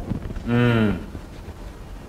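A man's voice holding one drawn-out vowel, a hesitation sound about half a second long, its pitch sagging slightly at the end.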